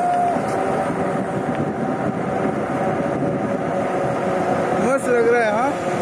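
Steady street traffic and road noise heard while riding a bicycle along a city road, with a brief voice about five seconds in.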